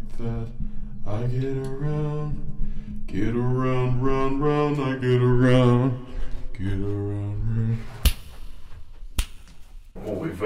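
A man's voice singing a wordless tune in long held notes that step up and down in pitch, followed near the end by two sharp clicks about a second apart.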